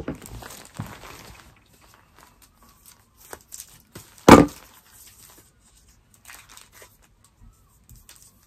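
Scissors and a paper-wrapped package being handled: soft rustles and small clicks, with one loud, sharp crack about four seconds in.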